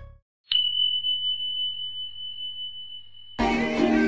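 A song's last notes fade out, and after a brief silence a single steady high-pitched electronic tone sounds for about three seconds. Near the end it cuts to loud music with singing.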